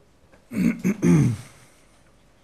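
A man clearing his throat with his hand over his mouth: one loud rasp in three quick pushes, about a second long, starting about half a second in.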